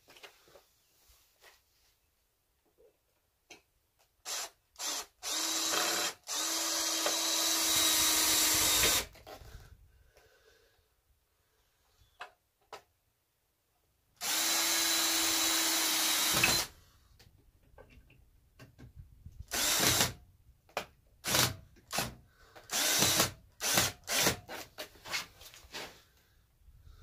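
Cordless drill driving deck screws into 2x6 lumber: a few short trigger pulses, then two steady runs of about three seconds each as screws are driven home, then a string of short bursts near the end.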